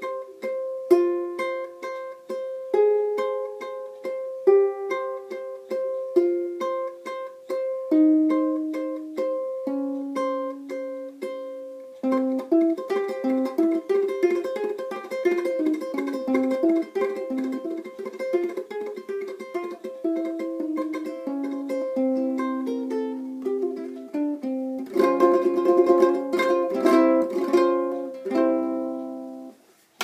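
Ukulele played fingerstyle with a flamenco tremolo: the thumb picks a melody while the ring, middle and index fingers repeat a high C after each note. It starts slowly, note by note, and about twelve seconds in speeds up into a fast, continuous tremolo. Near the end it closes with a louder run of chords.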